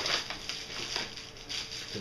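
Bubble-wrap packaging rustling and crinkling in the hands, with small irregular crackles, as it is pulled out of a cardboard box.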